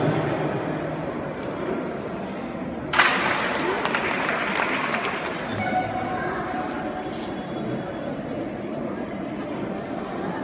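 A sharp crack about three seconds in as a stack of tiles breaks under a karate elbow strike, followed at once by a short burst of audience clapping that fades over a couple of seconds, over the murmur of a crowd in a large hall.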